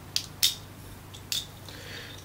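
A few light clicks and taps of small plastic toy parts being handled: two close together, then another about a second later.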